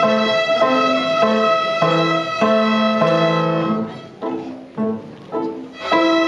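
A group of young violin students playing a simple tune together, bowed notes of about half a second each over a steady high note held beneath. About four seconds in the playing turns quieter and choppier, with short notes and gaps, before the full sound returns.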